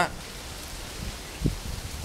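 Steady outdoor background noise, an even hiss, with one soft low thump about one and a half seconds in.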